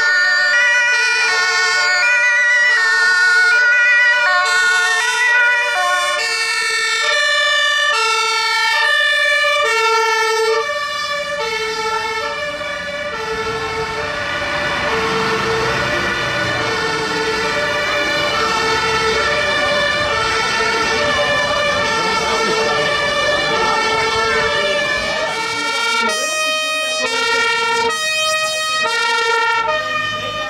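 German fire engines' two-tone sirens (Martinshorn) sounding together and out of step as the turnout pulls away. From about ten seconds in, the running diesel engine of a heavy fire truck passing close adds a rumble beneath the sirens.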